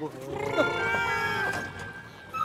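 A cow's moo over steady held tones of background music.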